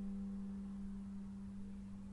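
The last held note of the background music: a single low, pure tone slowly fading out.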